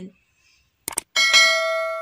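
Two quick mouse-click sound effects, then a bright bell ding that rings on and slowly fades: the notification-bell chime of a subscribe-button animation.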